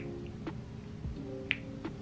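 A few faint clicks and one sharper tick about one and a half seconds in, from a foundation bottle being handled and dabbed onto the face, over faint background music.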